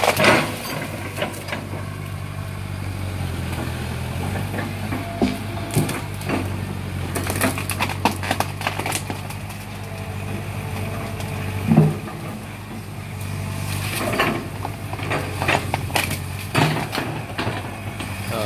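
Kobelco Yutani SK045 mini excavator's diesel engine running steadily while its bucket breaks up trees and brush, with repeated cracking and snapping of wood and a loud knock about twelve seconds in.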